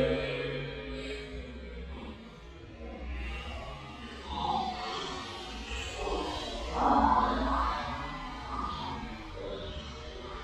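Slowed-down sound of beer gushing in a vortex from an upside-down bottle into a plastic bowl: a low, drawn-out, warbling pour with several swelling splashes in the second half.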